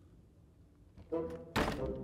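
A wooden door slammed shut once, a sharp thunk about one and a half seconds in, over a short music cue that starts about a second in.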